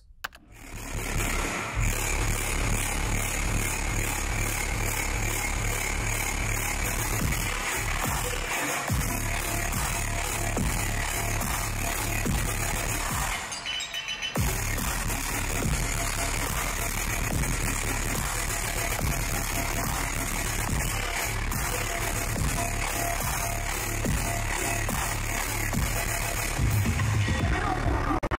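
Dubstep played loud over a festival sound system and recorded straight on the camera's microphone, with heavy bass under dense, gritty synths. About halfway through the music briefly drops out, then the bass comes back in.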